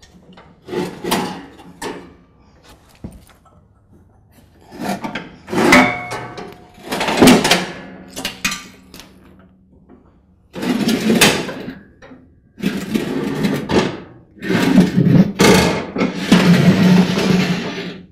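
A metal lawn-tractor mower deck dragged and shifted across a concrete floor as it comes out from under the tractor: irregular knocks and rattles at first, then longer scraping runs in the second half.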